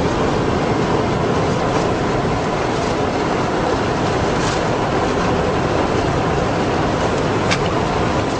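Loud, steady road and engine noise inside the cabin of a vehicle driving along a rough road, a dense rumble with light rattles and a sharp click near the end.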